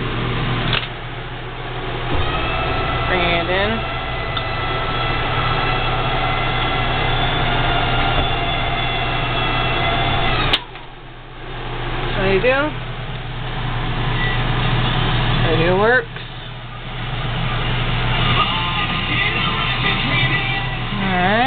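Travel-trailer slide-out motor running with a steady whine as the slide-out is brought in. About halfway through it cuts off suddenly with a click, then starts again and runs on, with another short break near the end.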